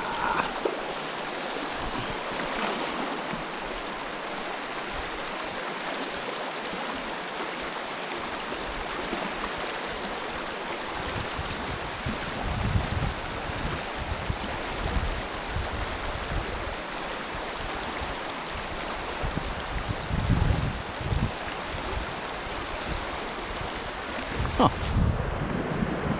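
Shallow, rocky mountain creek running steadily over stones in a constant rushing babble. From about halfway through, irregular low rumbles of wind buffet the microphone.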